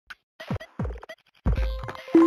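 Electronic opening sting of a TV news programme: short stuttering hits, each with a deep boom that falls in pitch, leading into a longer hit about one and a half seconds in.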